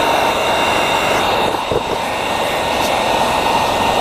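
Wagner electric heat gun running steadily, a rush of blown air with a thin high whine over it.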